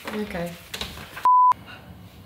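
A single short censor bleep: a pure, steady beep about a quarter second long, dropped in about a second and a quarter in, with all other sound cut out while it lasts.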